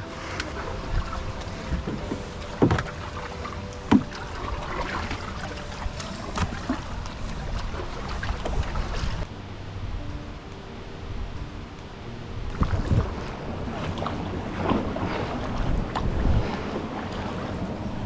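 Canoe paddles dipping and pulling through the water, with water sloshing along the hull and wind on the microphone. A few sharp knocks stand out, the loudest about four seconds in.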